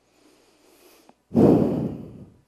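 A woman taking a deep breath: a faint inhale, then a louder sighing exhale starting just over a second in.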